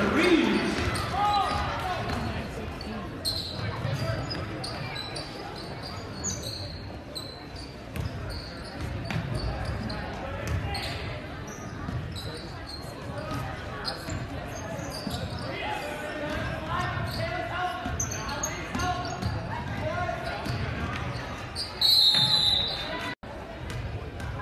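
A basketball game in play in a large gym: the ball bouncing on the hardwood, short high sneaker squeaks and steady crowd chatter. Near the end a referee's whistle blows once, briefly and loudly, stopping play for a foul shot.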